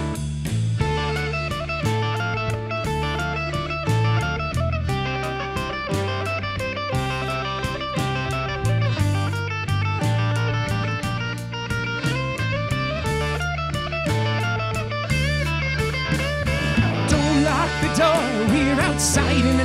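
Live rock band in an instrumental passage: an electric guitar, a Fender Telecaster, plays a melodic lead over sustained bass notes and a steady drum-kit beat.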